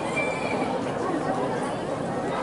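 A high, drawn-out shouted voice that rises, holds, and fades out about half a second in, over the steady chatter of a crowd.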